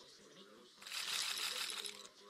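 Online roulette game's casino-chip sound effect as bets are placed: a dense burst of clinking chip clicks starting a little under a second in.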